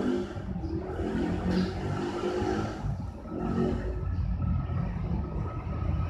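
A motor vehicle's engine running, the sound mostly low in pitch and swelling and easing every second or two.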